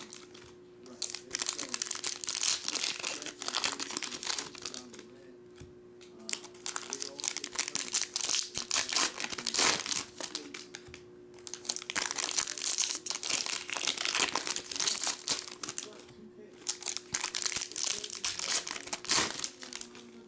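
Foil trading-card pack wrappers of 2022 Topps Chrome Sonic crinkling and tearing as packs are ripped open and handled, in bursts of a few seconds with short pauses between.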